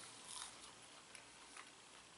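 Faint chewing of a crinkle-cut french fry: a few soft, scattered clicks over near silence.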